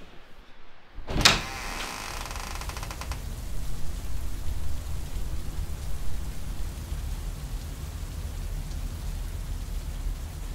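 A sharp crack about a second in, its ringing tail fading over about two seconds, then a steady low rumble of rain and storm noise.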